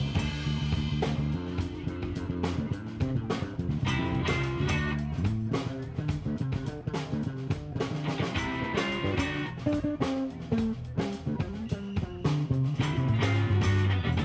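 Live rock band playing an instrumental passage: electric guitar over bass guitar and a drum kit, with steady drum hits throughout.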